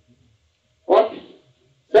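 Two short spoken words, one about a second in and one at the end, with quiet room tone between.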